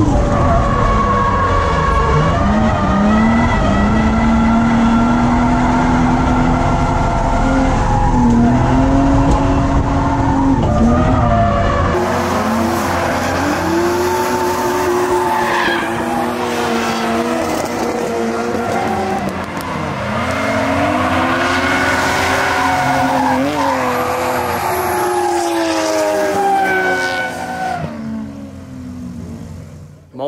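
BMW E36 328is's M52 inline-six revving hard while drifting, its pitch rising and falling repeatedly with the throttle, with tyre squeal. For the first part it is heard from inside the cabin, with a deep rumble; partway through it is heard from trackside, with less low end.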